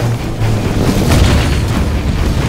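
Film score over explosions from a burning weapons and ammunition stockpile, with a loud boom a little past halfway.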